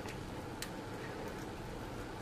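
Low steady room hiss with one faint light tick a little over half a second in, as a hobby knife blade is worked over a plastic miniature that has little left to scrape.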